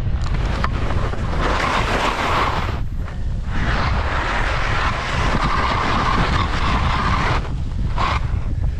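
Wind buffeting the microphone of a skier's body-mounted camera during a steep descent, with the hiss of skis skidding and scraping through snow in two long stretches, broken by a short lull about three seconds in.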